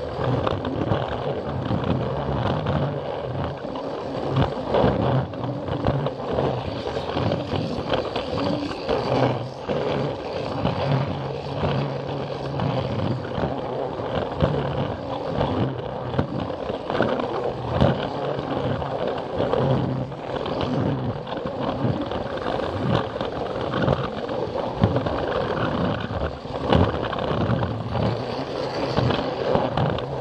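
Plarail toy train running along plastic track: the battery motor and gearbox whir steadily while the plastic wheels rattle and click over the track joints, heard close up from a camera riding on the train.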